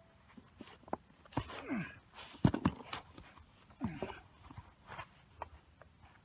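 A person getting down from kneeling to lying prone with a rifle: scattered knocks and rustles of the rifle and gear against a mat, the loudest knock about two and a half seconds in, with two short grunting breaths.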